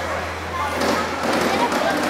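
Indistinct chatter of several adults and children talking at once, with no other distinct sound standing out.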